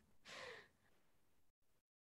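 A woman's single short breathy exhale, a sigh-like breath trailing off her laugh, lasting about half a second near the start, followed by near silence.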